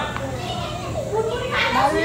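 Children talking and calling out, one saying 'bhalu' (bear) near the end, over a steady low hum.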